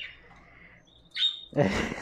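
Budgerigar chicks giving faint, high-pitched chirps, with one short chirp about a second in. Near the end comes a louder breathy rush of noise.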